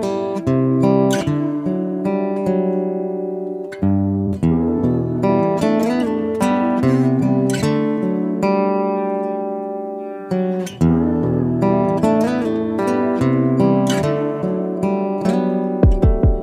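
Instrumental music led by plucked guitar, notes struck in a steady rhythm, with no singing.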